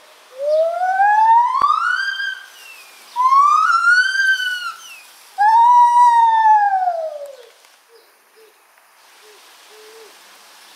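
Lar gibbon calling: three long hooting notes of about two seconds each, the first two sliding upward in pitch and the third sliding down. A single click comes during the first note, and a few short faint notes follow near the end.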